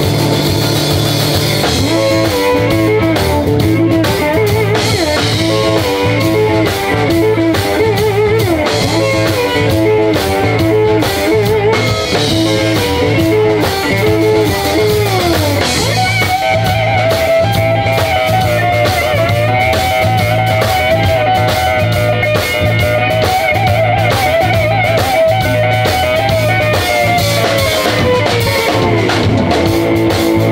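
Live blues band playing an instrumental passage: electric lead guitar phrases with bent notes over bass guitar and a steady drum kit beat. About halfway through, the guitar holds one long, wavering high note that drops away just before the end.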